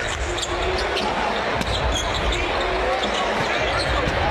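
Steady crowd noise in a basketball arena during live play, with a basketball dribbling on the hardwood court.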